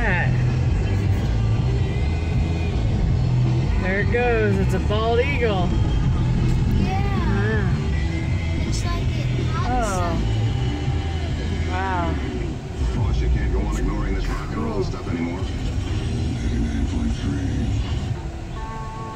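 Steady low road rumble inside a moving car's cabin. Short, wavering voice sounds rise and fall over it several times, at about 4, 5, 7½, 10 and 12 seconds.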